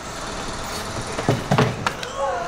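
A few loud hollow knocks and thuds close together near the end, from a plastic animal carrier being handled, over a steady rushing background.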